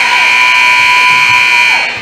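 Gym scoreboard buzzer sounding one long, loud, steady blast of nearly two seconds, then cutting off: the signal that the timeout is over.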